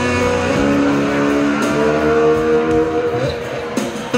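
Amplified cigar box guitar playing an instrumental blues line: held, ringing notes with short glides between pitches.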